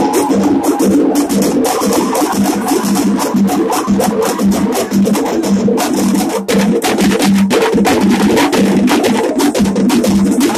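Loud music with fast, dense drumming and a steady repeating beat.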